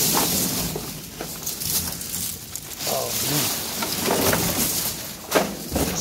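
Rustling and knocking of trash being shifted in a dumpster: plastic bags, branches and junk rubbing and bumping, with a few sharp knocks.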